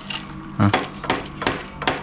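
A series of sharp metallic clicks and knocks from a key turning in a motorcycle ignition switch as its steering lock is tried.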